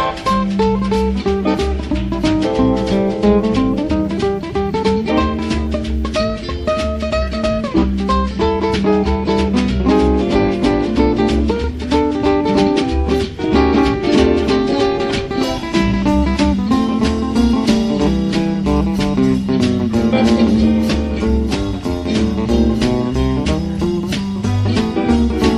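A small acoustic jazz band playing an improvised instrumental: plucked guitar and electric soprano ukulele lines with gliding steel-guitar notes, over a washtub bass and drums.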